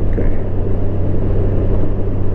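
A Honda Gold Wing Tour's flat-six engine drones at a steady cruise under constant wind and road noise, heard from the rider's seat.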